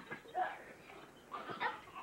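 Small children's short, high-pitched yelps and squeals while playing on a trampoline, one about half a second in and a couple more around a second and a half in.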